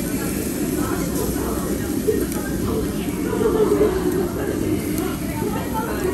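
Indistinct chatter of restaurant diners over a steady low rumble, swelling slightly in the middle.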